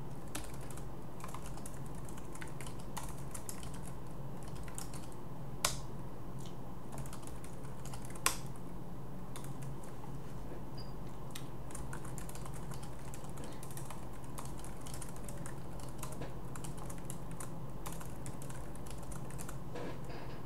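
Typing on a computer keyboard: irregular runs of keystrokes, with two sharper, louder clacks about six and eight seconds in, over a steady low background hum.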